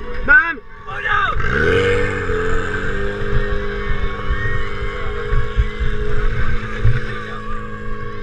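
Portable fire pump engine revving up about a second and a half in, then running steadily at high speed as it pumps water into the hoses.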